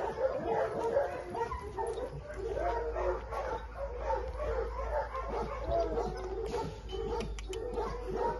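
Dogs barking and yipping, many short calls at different pitches overlapping.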